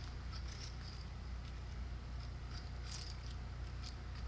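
Quiet poker-table ambience: a steady low hum with a few soft, light clicks of clay poker chips being handled.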